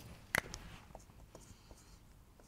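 Marker pen on a whiteboard: a sharp click about a third of a second in, then faint scratching strokes of writing with a few small ticks.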